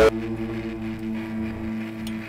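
The song cuts off abruptly right at the start, leaving a guitar chord ringing on in steady, sustained notes that slowly fade. The lowest note drops out shortly before the end.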